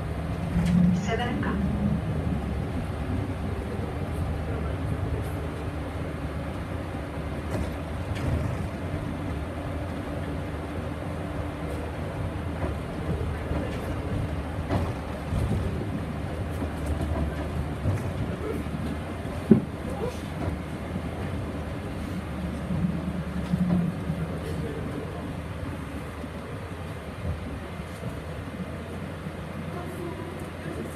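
Solaris Urbino 15 III city bus driving, heard from inside near the front: steady engine and road noise. There are scattered light rattles and one sharp knock about twenty seconds in.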